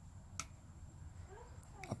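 A single sharp click from the power button of a Kadosh K-502M wireless microphone receiver as it is switched on; the rest is a quiet room.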